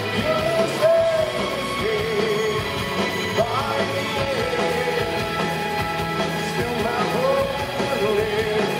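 Rock band playing live and loud: electric guitars, bass guitar and drums, with a voice singing the melody over them.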